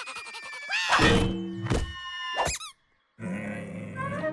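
Cartoon slapstick sound effects over a music score. A loud squeal bending upward comes with a thud about a second in, then a sharp hit, then a quick falling warble. The sound drops out briefly before the music comes back.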